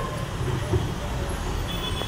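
A steady low rumble of outdoor background noise, with faint murmuring voices.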